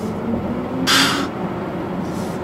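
Cabin sound of a BMW iX xDrive50 accelerating hard from 30 mph on its two electric motors: road and tyre noise under a thin whine that rises slowly in pitch, with a short hiss about a second in.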